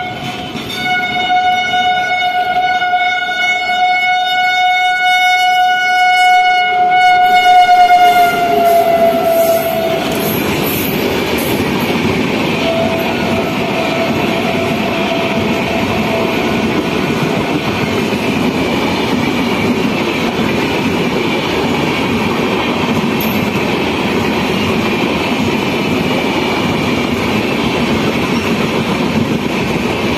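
Express train's horn sounding one long blast for about ten seconds, its pitch dropping as the locomotive goes by, then a shorter, fainter blast. After that, the steady rumble and wheel rattle of the coaches running through the station at speed without stopping.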